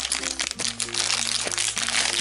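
Plastic-foil blind-bag packet crinkling and crackling continuously as it is handled and pulled open, over light background music with held notes and a steady bass line.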